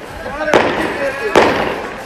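Two sharp firecracker bangs about a second apart, each with a short echoing tail, over faint voices.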